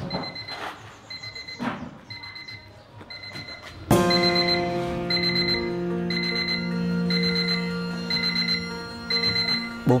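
Electronic alarm clock beeping, a short high double-pitched beep about once a second. About four seconds in, soft sustained music comes in over it and becomes the louder sound.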